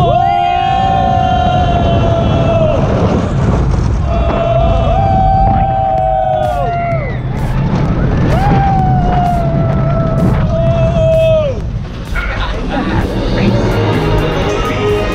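Roller coaster riders letting out three long held yells, each a few seconds long, over the wind rush and low rumble of the moving coaster car.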